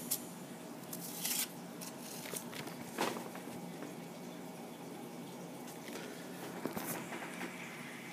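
Faint handling noise from a paper banknote and a hand moving on a tabletop: a brief rustle about a second in, then a few light clicks and taps, one about three seconds in and a couple near seven seconds.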